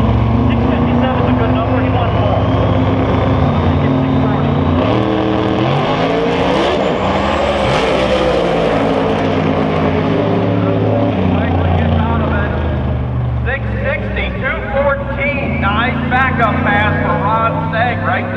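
Outlaw 10.5 drag cars at full throttle making a quarter-mile pass. The loud engine note steps up in pitch several times as they pull through the gears. A voice comes in over the engine sound in the second half.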